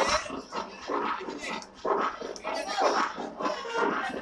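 Several young voices shouting and calling over one another in short, irregular bursts.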